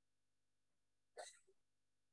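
Near silence, broken about a second in by one short, faint sound.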